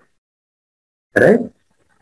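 Only speech: a man says a single drawn-out "right" just over a second in, with dead silence around it.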